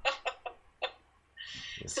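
Laughter tailing off in a few short, clipped bursts, then a brief pause and a short hiss of breath just before speech resumes.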